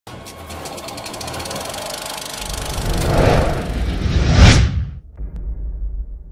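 Channel logo intro sting: a rapid ticking texture swells into a loud rising whoosh that peaks about four and a half seconds in, then cuts off into a quieter, bass-heavy music bed.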